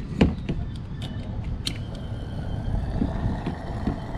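Gas-pump nozzle clicking as its handle is worked, then gasoline starting to flow through the nozzle into the car's filler neck with a steady hiss.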